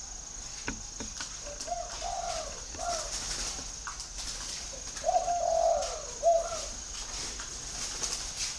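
Spotted dove cooing: two phrases of low coos, the second longer and louder, each ending on a short separate final note.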